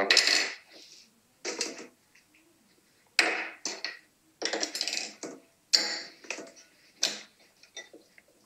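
Short, separate clatters and knocks, about seven in eight seconds, each dying away quickly: a glass bowl and dog food being handled on a kitchen countertop.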